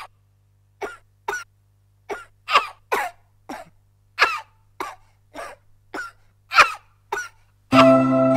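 A person coughing about a dozen times in short, irregular coughs. Plucked-string music comes in near the end.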